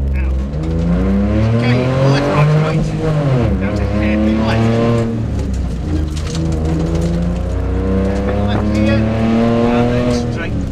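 Rally car engine heard from inside the cabin, accelerating hard off the start: the revs climb, drop sharply about three and a half seconds in, then climb again several times as it changes gear and lifts for the tyre chicanes.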